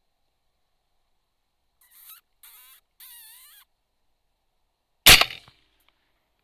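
Three short, wavering high squeaks about two to three and a half seconds in, then a single rifle shot about five seconds in, the loudest sound, with a short ringing tail.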